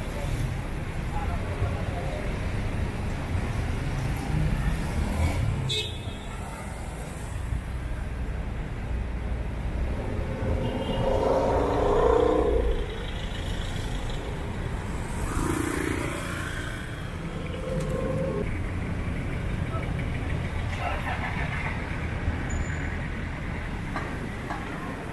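Street traffic: cars and vans passing with a steady low engine and tyre rumble, and voices of passersby. A sharp click comes about a quarter of the way in, and a brief louder pitched sound near the middle is the loudest moment.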